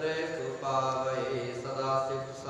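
A man chanting Sikh scripture (Gurbani) in a steady, near-monotone voice with long held notes.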